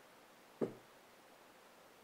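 A palette knife tapping once against the palette while mixing paint: one short, sharp knock a little over half a second in, over faint room tone.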